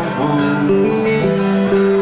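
Acoustic guitar strummed as a folk-song accompaniment between sung lines, its chords ringing and changing about once a second.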